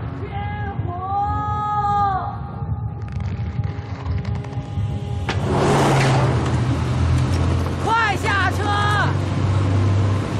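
Shouting voices, then a sudden loud burst of noise about five and a half seconds in, after which an old military jeep's engine runs with a steady low rumble. More short cries come over the engine near the end.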